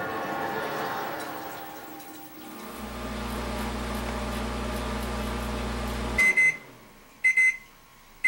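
A fading ringing tone, then a microwave oven running with a steady low mains hum that cuts off suddenly a little after six seconds in as the cook time runs out. High beeps in quick pairs, about once a second, follow: the oven's end-of-cycle signal.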